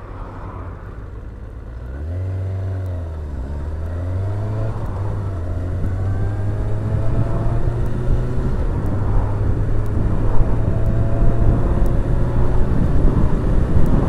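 Kawasaki ZX-6R motorcycle's inline-four engine running low at first. About two seconds in it revs up and drops back briefly, then pulls steadily with its pitch rising and growing louder as the bike accelerates.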